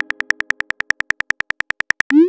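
Phone keyboard click sound effect ticking rapidly and evenly, about a dozen short pitched clicks a second, as a message is typed one letter at a time.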